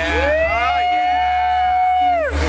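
A person's long, held high-pitched "woooo" cheer: it rises into one steady note, holds for about two seconds and falls off at the end, over bar music and chatter.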